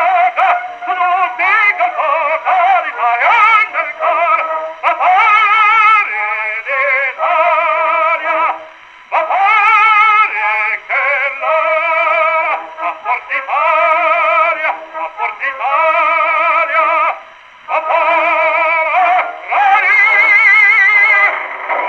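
A 1918 acoustic 78 rpm record of an operatic tenor singing, played back through the horn of a Victor V gramophone. The sound is thin and narrow, with no deep bass and little top, and the voice carries heavy vibrato in long phrases separated by brief pauses about nine and seventeen seconds in.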